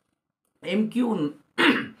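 A man clears his throat, then coughs once near the end, after about half a second of silence.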